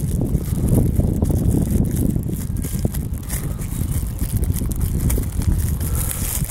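Wind buffeting a clip-on lapel microphone, a steady low rumble, with a few light crinkles and clicks of a plastic utensil wrapper being opened.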